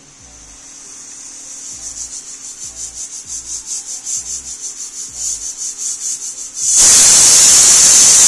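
Stainless-steel pressure cooker on an induction cooktop coming up to pressure: a pulsing steam hiss grows steadily louder. About seven seconds in, the whistle blows with a sudden, much louder steady hiss of escaping steam. This is the first whistle, which the cooktop's whistle counter is set to count.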